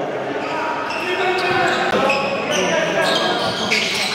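Live sound of an indoor basketball game: the ball bouncing on the court among players' voices and shouts, echoing in the gym hall.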